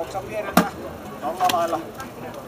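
A Leveraxe splitting axe strikes a firewood log and splits it: one sharp chop about half a second in, then a fainter knock about a second later.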